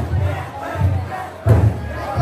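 Big taiko drum inside a festival drum float beaten in a slow, heavy beat, about three strokes, under a crowd of float bearers shouting and chanting together.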